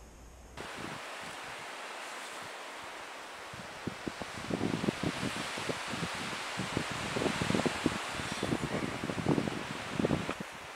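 Gusty wind blowing through bush, with many short, irregular rustles from about four seconds in.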